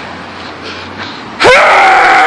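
A man's loud, drawn-out yell, breaking out suddenly about one and a half seconds in after a low street background.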